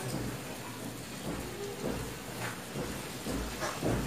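Cloth rustling and brushing as hands handle, lay out and smooth flat cut fabric pieces of a garment, in several irregular swishes.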